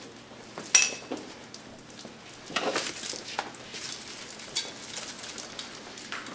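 Ropes and metal hooks of a hanging wooden toy horse being handled: one sharp metallic clink about a second in, then soft rustling and light knocks.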